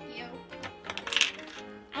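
A quick run of light clicks and clatter from a small hard plastic toy bowl being handled, in the middle of the stretch, over soft background music.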